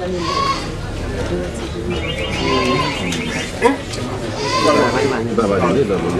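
People's voices talking and reacting, with a high wavering sound lasting about a second, two seconds in.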